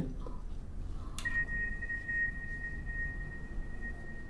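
Soft background score: a single high note comes in sharply about a second in and is held steadily, over a low room hum.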